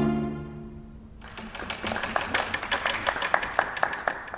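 Bowed strings' final chord dying away over about a second, then a small group clapping from just over a second in.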